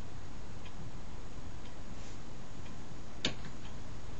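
Steady background hiss of the recording with a few faint ticks and one sharper click about three and a quarter seconds in.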